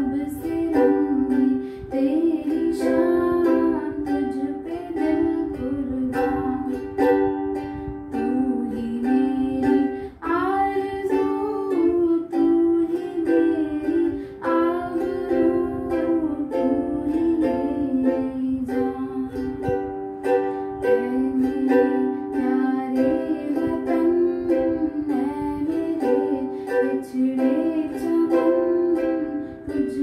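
A woman singing a patriotic Hindi song, accompanying herself on a strummed ukulele.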